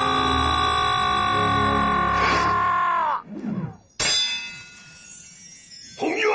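A man's long, drawn-out anguished shout that falls in pitch and trails off about three seconds in, followed a second later by a single sharp metallic clang that rings on and fades away.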